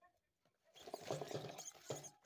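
Two pet mice fighting over territory: a sudden burst of rapid scuffling and scratching in loose bedding, starting less than a second in.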